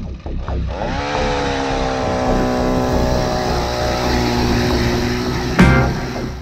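Gas-powered ice auger's small engine revving up over the first second, then running at a steady high speed as the auger bores through the ice, over a background music beat. A sudden loud hit near the end.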